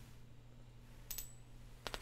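Quiet room tone with a low steady hum and two faint short clicks, one a little over a second in with a brief high ring, the other near the end.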